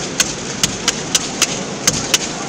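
Sharp claps close to the microphone, about three a second and unevenly spaced, over the steady noise of a stadium crowd.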